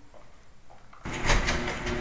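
Button-operated electric garage door starting up about a second in: a sudden start of a motor and moving-door rumble with a few sharp clicks, continuing as the door opens.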